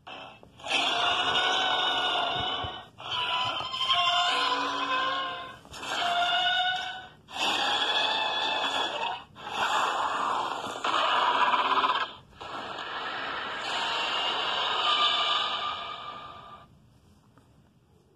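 A run of about six long, shrill monster screeches and roars, each lasting one to four seconds with short breaks between them: kaiju battle cries for a toy King Ghidorah and Mothra fight.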